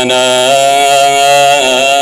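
Ethiopian Orthodox Mesbak chant: a man's chanting voice holds one long note, wavering slightly in pitch.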